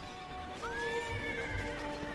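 A horse whinnying: one long call that rises, then slowly falls, over background music with held notes.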